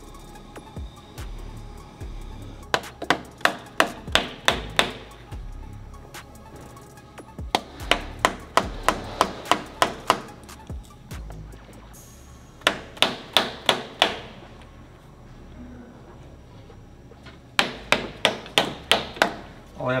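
Hammer blows on a press-fit tool, driving a heated sleeve onto the Bugatti Veyron's crankshaft at the rear main seal to give the seal a smooth surface over the pitting. The blows come in four runs of quick sharp strikes, about four a second, with pauses between.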